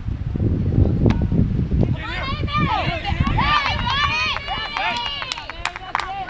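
Wind rumbling on the microphone, then several high women's voices shouting and cheering together in overlapping calls, with a few sharp claps near the end.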